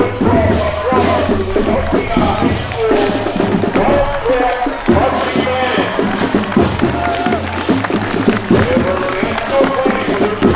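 A high school marching band playing, melody instruments over drums.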